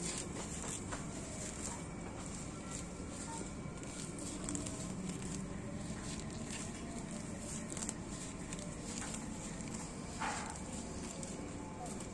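Grass and weeds being pulled up by hand from a lawn: soft, irregular rustling and tearing of the stems over a steady outdoor background hiss.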